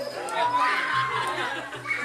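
A group of men talking and laughing together, with one long drawn-out call rising then holding for about a second in the middle.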